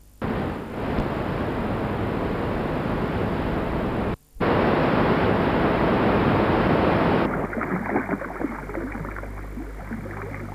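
Rushing water of a waterfall and river rapids, a steady loud rush that cuts out for a moment about four seconds in and comes back louder. From about seven seconds in it turns duller, losing its hiss.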